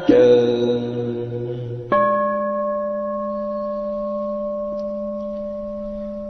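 A Buddhist bowl bell struck twice between verses of a chant, about two seconds apart, each strike ringing on and slowly fading; the second, higher strike rings steadily for several seconds.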